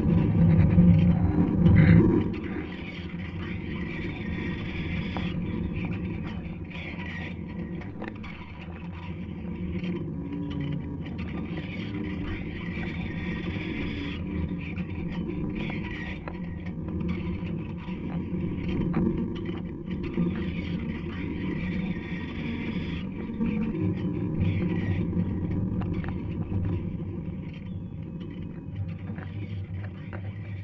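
Live experimental electronic music: a dense, layered drone with a low rumble and slowly shifting bands of noise, loudest in the first couple of seconds and then steady.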